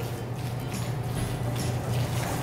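A spoon stirring thick chicken salad in a stainless steel mixing bowl, with a run of irregular soft taps and scrapes against the metal.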